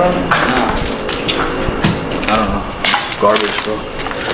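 Footsteps crunching over scattered broken wood and rubble on a concrete floor, with several sharp cracks and knocks, and a few murmured words.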